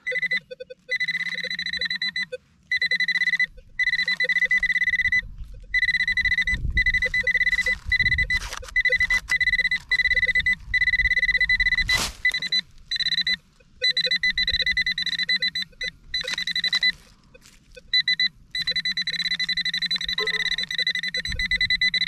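Handheld metal-detecting pinpointer sounding a steady high-pitched alert tone, broken by short gaps, over a fast pulsing beep, as its probe is worked through loose soil over a buried metal target. A sharp knock about twelve seconds in.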